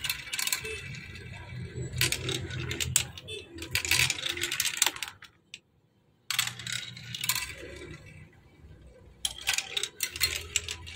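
Small plastic balls rattling and clicking as they roll down a plastic building-block marble run and spin around its funnels. The clatter stops for about a second midway, starts again, and goes quieter before a few more clicks near the end.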